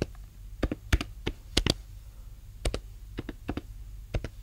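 Computer keyboard keys being typed, sharp separate keystrokes in two short runs with a pause of about a second between them.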